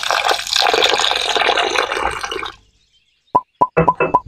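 Water poured in a stream into a glass bowl of semolina and curd, splashing steadily and stopping after about two and a half seconds. Near the end a metal spoon starts clinking against the glass bowl several times, ringing briefly with each tap, as mixing begins.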